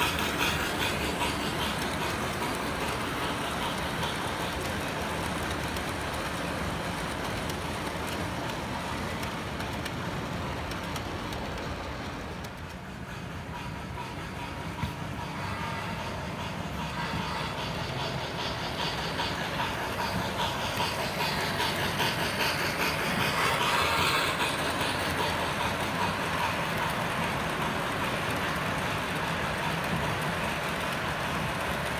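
S-gauge American Flyer Polar Express Berkshire model train running on the layout track: the wheels rolling over the rails mixed with the locomotive's onboard steam sound effects. It quietens briefly about halfway through and is loudest about three-quarters of the way through.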